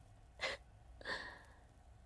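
Two short, faint breaths from a young woman, about half a second and a second in.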